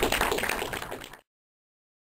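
Laughter and clattering audience noise in a cinema hall, fading out and cut off about a second in.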